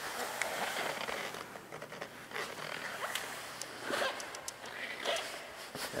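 Irregular rustling and scraping handling noise, with a few faint clicks, as the camera is moved about close to the bicycle.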